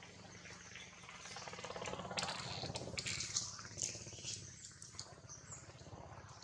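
Faint outdoor ambience: a low steady hum with a cluster of soft clicks and rustling about two to four seconds in.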